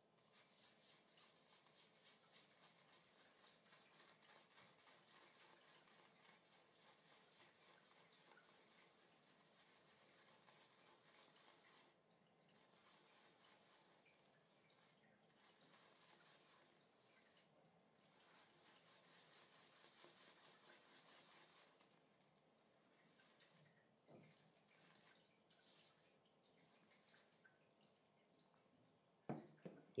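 Faint, quick wet swishing of a New Forest super badger shaving brush swirled over Cella shaving soap in a plastic tub, loading the brush with soap. It comes in runs of rapid strokes broken by a few short pauses.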